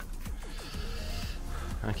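Low-level quiet after background electronic music fades out, with only faint ambient noise. A man starts speaking at the very end.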